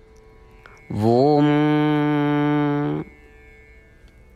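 A voice chanting one long held 'Om', sliding up into the note about a second in and holding it steadily for about two seconds, over a soft steady musical drone.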